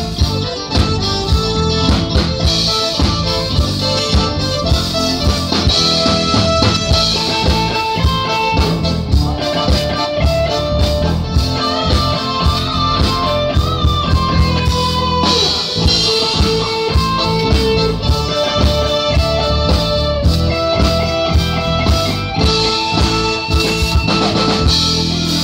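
Live band playing an instrumental break in a pop song: a guitar melody of stepping notes over drum kit and bass, with a steady beat.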